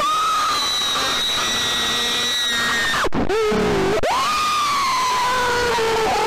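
Two long, high screams over a harsh noisy haze. The first is held for about three seconds and drops away sharply. The second rises in about a second later and sags slowly in pitch.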